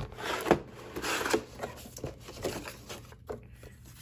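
Cardboard and plastic packaging rustling and scraping as an inner tray is slid out of a box sleeve and paper leaflets are picked up. Louder in the first second and a half, then fainter, with a few light knocks.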